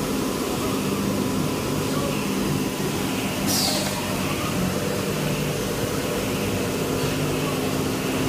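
Steady drone of machinery on an EPS foam wall-panel production line, with a few steady low hum tones underneath. A short high hiss sounds about three and a half seconds in.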